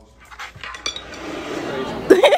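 A few light clicks and clinks in the first second, then a steady hiss of background noise that grows louder.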